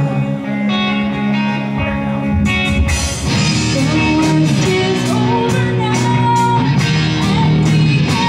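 Live rock band: electric guitar playing sustained chords alone, then drums and bass coming in about two seconds in, with regular cymbal hits and a melody line over the top.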